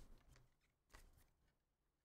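Very faint rustling and light scrapes of trading cards being handled and slid against each other, in a couple of brief bursts.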